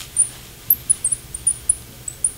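Marker tip squeaking on a glass lightboard as words are written: a quick string of short, high-pitched squeaks.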